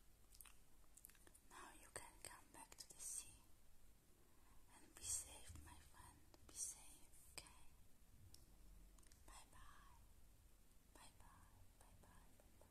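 Faint close-up whispering and mouth sounds, coming in short breathy bursts every second or two, with a few soft clicks.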